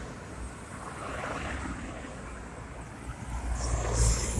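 Road traffic passing close by: cars and a van driving past one after another, their tyre and engine noise swelling and fading. It is loudest near the end as a vehicle passes closest.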